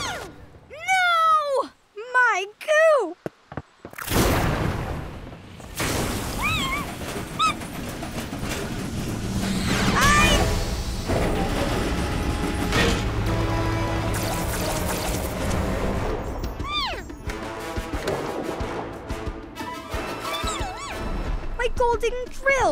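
Cartoon action soundtrack: background music with short wordless vocal exclamations. A sudden loud burst comes about four seconds in, followed by a long rushing noise.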